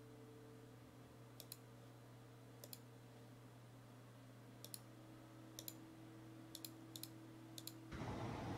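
Computer mouse clicking about seven times, each click a sharp press-and-release pair, over a faint steady hum.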